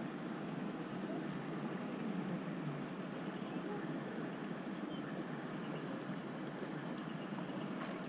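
Steady rush of flowing water, an even hiss with no breaks.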